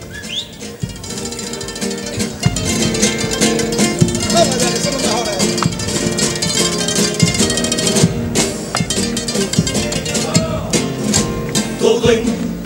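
A group of Spanish guitars strummed together with drum beats keeping time, playing the instrumental opening of a Cádiz carnival comparsa's presentation. It starts softly and grows fuller and louder about two seconds in.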